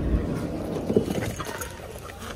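A car's side door is unlatched by its handle and opened, with a low thump at the start. Rustling, rumbling noise follows as a Rottweiler gets out of the car.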